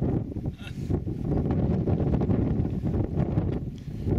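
Wind buffeting the microphone: a loud low rumble that rises and falls in gusts.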